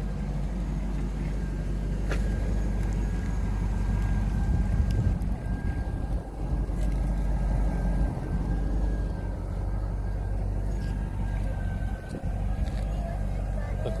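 1999 Chevrolet Corvette C5's LS1 V8 running at a steady idle.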